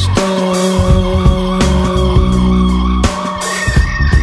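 Recorded band music in an instrumental stretch: drum hits over steady held tones, with no singing.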